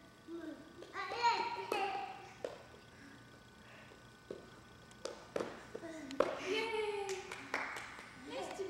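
A young child's high-pitched wordless vocalizing, in a spell about a second in and another from about six seconds in, with a few sharp smacks in between.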